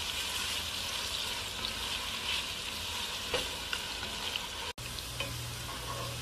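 Sliced onions frying in hot oil in a pan, a steady sizzle as they are stirred with a spatula on their way to browning, with a few light clicks. Near the end a brief cut, after which a low steady hum runs under the sizzle.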